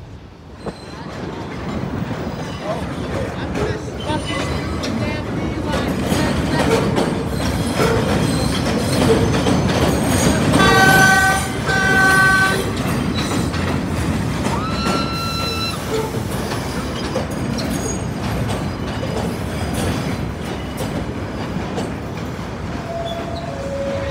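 New York City subway trains rolling through an elevated terminal, with a steady rumble and clatter of wheels on the rails. About halfway through, a train horn gives two short blasts, one right after the other, and a brief high wheel squeal follows a few seconds later.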